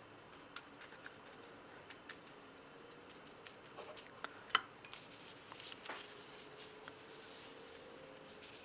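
Faint, scattered light taps and scratches of a paintbrush working wet acrylic paint on paper, with a sharper click about four and a half seconds in, over a faint steady hum.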